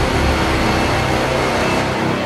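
Loud cinematic logo-reveal music: a dense, noisy swell held steady over deep bass.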